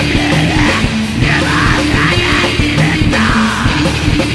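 Black metal band playing: distorted electric guitars and drums, with harsh yelled vocals.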